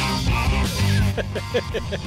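A rock band's recorded song playing, with guitar and a prominent bass line; a man laughs briefly near the end.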